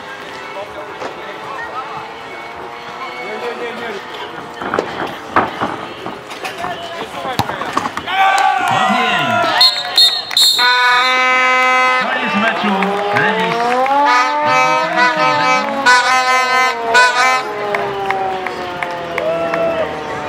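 Voices and shouts of spectators and players, with a few knocks, then about halfway a steady held brass-like note sounds for a second or two. It is followed by a brass-sounding tune with sliding, bending notes that runs to the end and is the loudest part.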